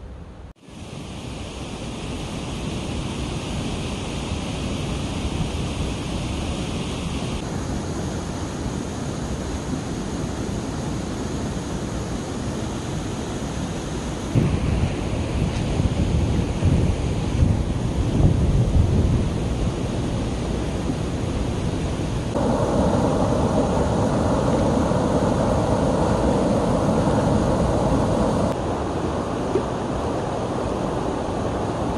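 Outdoor ambience that shifts abruptly every several seconds: gusty wind buffeting the microphone in the middle, and water rushing over rocks in a stream near the end.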